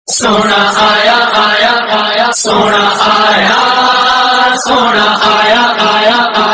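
Loud melodic religious chanting in long, wavering held notes, with a few sharp hissing sibilants. It starts suddenly.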